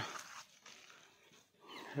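Faint background, then near the end a short breathy sound, a man's breath, just before he speaks again.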